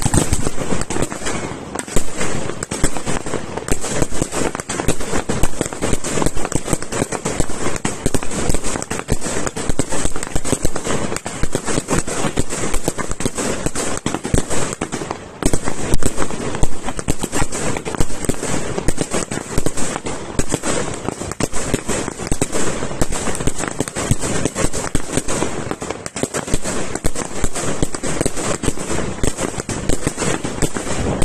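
Aerial fireworks display going off in a dense, continuous barrage of rapid bangs and crackling, with a brief break about halfway through.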